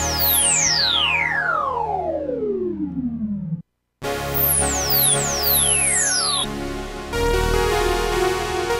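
Fender Chroma Polaris analog polysynth played from its keyboard, recorded dry: a patch with pitch sweeps falling over a held chord. The sound cuts off abruptly about three and a half seconds in, returns after a brief gap with more falling sweeps, and then a new steady chord sounds about seven seconds in.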